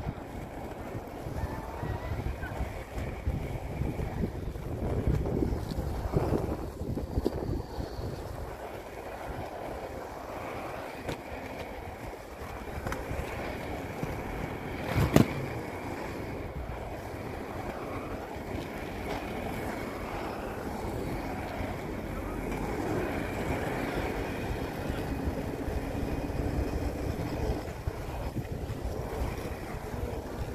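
Wind buffeting a phone's microphone outdoors: a steady low rumble, with one sharp knock about halfway through.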